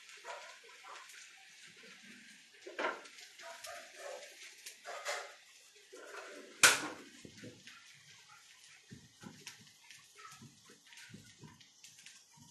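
Kitchen handling noises: scattered short knocks and clinks of dishes and utensils, with one sharp, loud knock a little past halfway.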